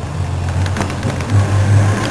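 A car engine idling nearby, a steady low hum.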